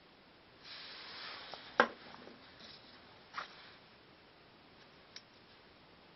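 Close handling noise as hands work small pine wood sticks: a soft scrape lasting about a second, then a sharp click, another brief scrape in the middle, and a faint click near the end.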